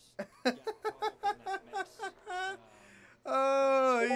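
A man laughing in a quick run of short bursts, then a loud, long held vocal sound near the end.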